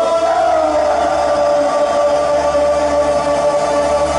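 Live electronic music played on synthesizers: sustained, layered pad tones over a low steady drone, the main pitch sliding slightly downward in the first second and then holding steady.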